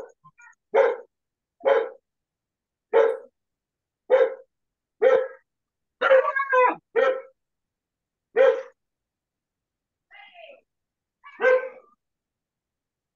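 A dog barking repeatedly, about one bark a second, with a quick run of barks about six seconds in, heard through a video call's audio with silence cut out between barks.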